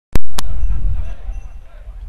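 Two sharp knocks as the sound cuts in, then a loud low rumble of match-broadcast background noise that fades over about two seconds.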